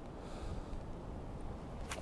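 Faint, steady background noise with no distinct event.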